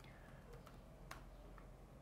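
A few faint clicks of computer keyboard keys being typed, against near silence.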